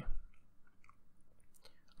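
A pause in a narrator's reading: near silence after a word trails off, with a few faint mouth clicks before the next line begins.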